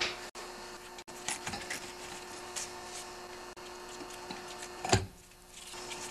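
Metal parts of a small engine being handled and worked on a workbench: faint clicks and ticks over a steady hum, with one sharp knock about five seconds in.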